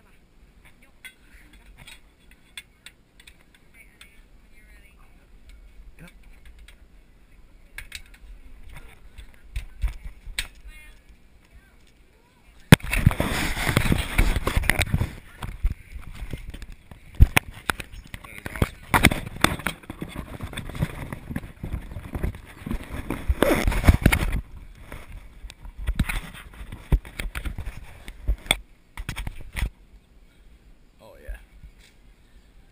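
Handling noise on the camera's own microphone: loud rubbing and knocking as the camera is pressed against and moved along the metal rail of the elephant seat. It starts suddenly about thirteen seconds in and lasts about eleven seconds, followed by a few shorter knocks.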